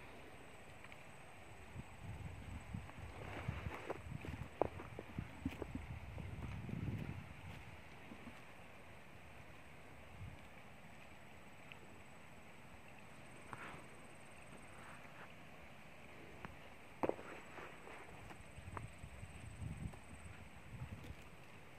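Quiet outdoor background hiss with a faint steady high tone, broken by bursts of low rumbling, rustling and sharp clicks close to the microphone, busiest a couple of seconds in and again near the end.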